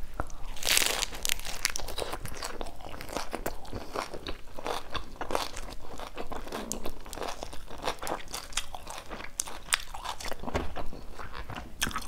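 Biting into a crispy fried Vietnamese spring roll (chả giò) wrapped in lettuce, picked up close by a clip-on microphone: one loud crunch about half a second in, then a steady run of crisp crunching as it is chewed. The rice-paper wrapper is crisp because the roll was fried twice, first in oil and then in an air fryer.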